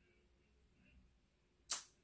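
Near silence: room tone. Near the end comes one short, sharp breathy hiss, a quick intake of breath just before speech resumes.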